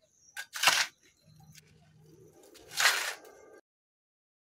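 Metal shovel blade scraping into loose soil and manure as it is scooped: two short scrapes about two seconds apart. The sound cuts off abruptly shortly before the end.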